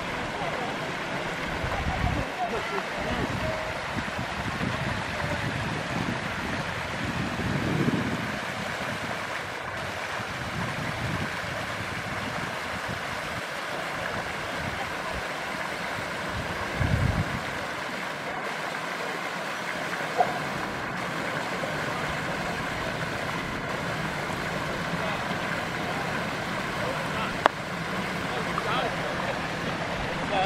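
Steady splashing of water from a floating pond aerator churning the surface of a trout pond. Wind rumbles on the microphone a few times, and there are two sharp clicks in the second half.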